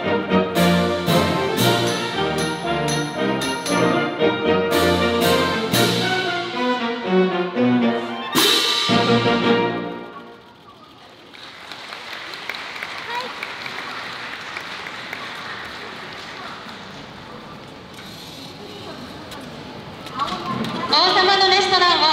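A concert band with straight fanfare trumpets plays brass-band music and ends on a loud final chord with a cymbal crash about nine seconds in. Audience applause follows for about ten seconds, softer than the music, and near the end a woman starts speaking into a microphone.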